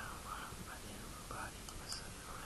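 A man's quiet, murmured speech, close to a whisper, with a short hiss near the end.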